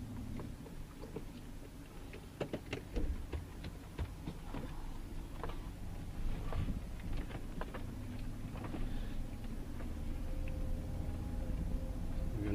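A car driving slowly over a rough dirt track, heard from inside the cabin: a steady low engine and tyre rumble, with scattered clicks and knocks as it bumps along.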